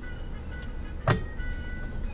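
Low steady rumble of a car creeping slowly along a narrow rough lane, recorded by a dashcam inside the cabin, with one sharp knock about a second in. Thin high notes are held over it, each changing pitch after about half a second.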